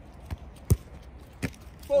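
A football thudding twice, a loud sharp impact and then a softer one about three quarters of a second later, as the ball is struck toward the goalkeeper and caught in his gloves during a catching drill.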